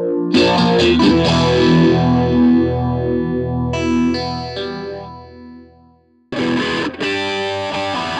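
Electric guitar played through a Pfeiffer Electronics Phaser pedal, an MXR Phase 90–style phaser. A chord is struck just after the start and left to ring and fade away over several seconds. A new run of short, choppy chords starts about six seconds in.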